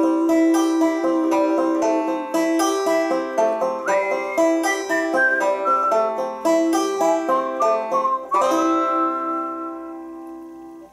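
Banjo chords strummed in a steady rhythm, then a final chord struck about eight seconds in that is left to ring and fade away.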